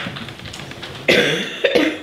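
A person coughing, two short coughs about a second apart.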